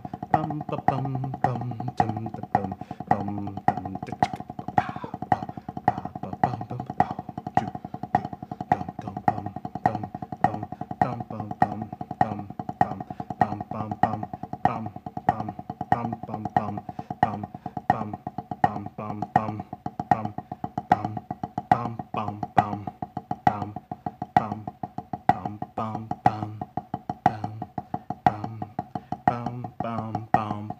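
Drumsticks striking a practice pad in a fast, continuous run of rudiment strokes with regular louder accents. They are played over a backing track with a bass line.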